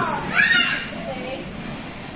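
Children's voices at play: a child gives a loud, high-pitched cry about half a second in, with other children's chatter around it.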